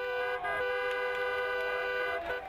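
A car horn held down in one long, steady blast.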